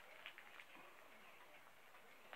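Near silence with a few faint, short clicks as a trading card is slid out of a plastic binder pocket.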